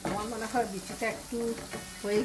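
A spatula stirring and scraping a thick dried-fish and jackfruit-seed curry in a non-stick frying pan, the food sizzling as it fries. A voice is heard along with it.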